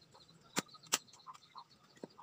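Bolo knife chopping wood into kindling: two sharp chops about half a second apart in the first second, then a pause with only faint knocks.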